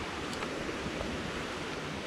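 Steady, even rushing hiss of outdoor background noise with no distinct events, apart from one faint click about a third of a second in.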